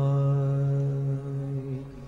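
Shabad kirtan: a man's sung note held long and steady over harmonium, dying away near the end, after which the harmonium carries on softly.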